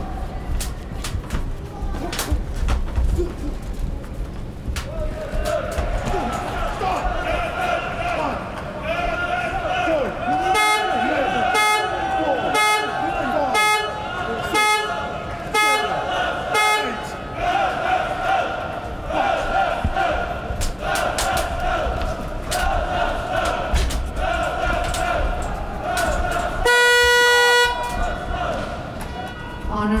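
Boxing arena crowd with fans blowing horns: wavering held horn notes over crowd noise, with a run of short toots about once a second in the middle. Near the end a buzzer sounds once, under a second long, marking the end of the round.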